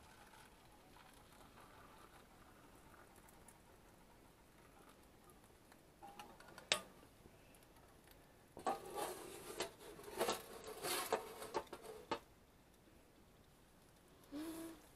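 Faint pouring of hot water from a stainless steel stovetop kettle into a paper cup, then a sharp click and, about two-thirds of the way in, a run of metallic clanks and rattles as the kettle is handled and set back down on a camping stove.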